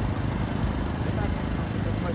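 Indistinct men's voices talking over a steady low rumble of outdoor background noise.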